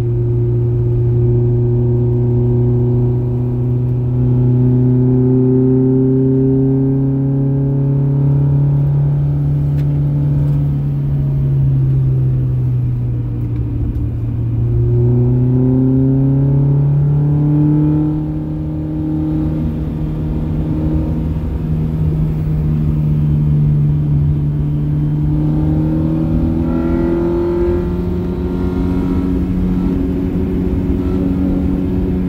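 Honda Prelude's G23 inline-four engine heard from inside the cabin, pulling through mountain bends. Its note rises and falls slowly with the throttle, dropping off briefly about two-thirds of the way through, then climbing steadily to the end.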